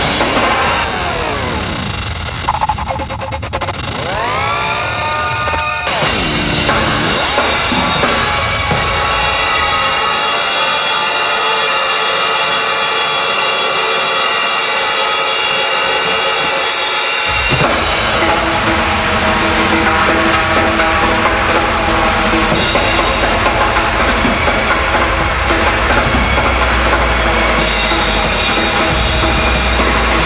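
Pearl rock drum kit played hard, with bass drum, snare and cymbals, mixed with produced sound effects. In the first few seconds sweeping pitch glides run over the drums. Then come held tones with the low end dropped out, and the full kit with bass drum comes back in about seventeen seconds in.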